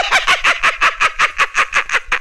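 A man's loud, rapid cackling laugh, a quick run of short 'ha' pulses, about eight or nine a second, that PANN hears as close to a fowl's cackle.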